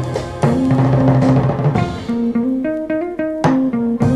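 Instrumental passage of a 1960s rock-and-roll 45 rpm single, with electric guitar and drum kit. A quick run of drum strokes comes about three seconds in.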